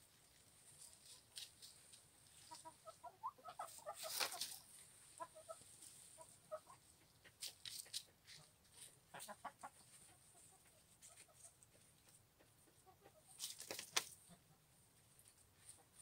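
Chickens, silkies among them, clucking softly in short scattered runs of notes. A few short sharp rustling noises stand out, the loudest about four seconds in and again near the end.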